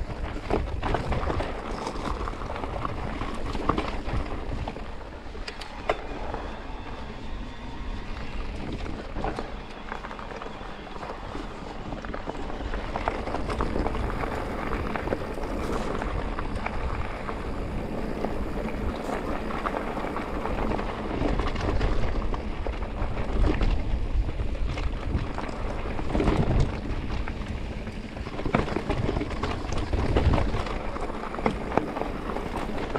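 Electric mountain bike riding over rough, rocky singletrack: tyres crunching on loose stone and gravel, with frequent sharp knocks and rattles as the bike hits rocks, under a steady rumble of wind on the microphone.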